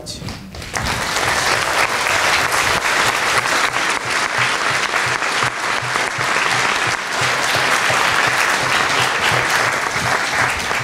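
Large seated audience applauding steadily, the clapping swelling in about a second in and holding without a break.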